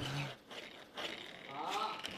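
Faint voices in a room, low against the room noise, with one short murmur at the start and faint talk near the end.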